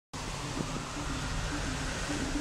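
Steady outdoor ambient noise, an even hiss, with a faint low hum that comes and goes.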